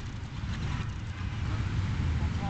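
Wind buffeting the camera's microphone: a low, uneven rumble.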